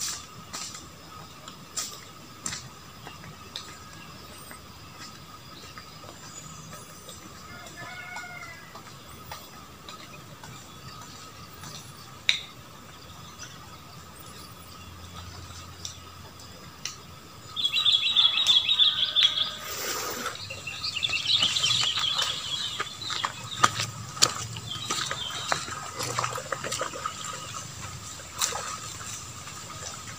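Outdoor ambience: small birds chirping, scattered clicks and a steady high tone throughout. A louder, high, buzzing stretch starts a little after halfway and lasts several seconds.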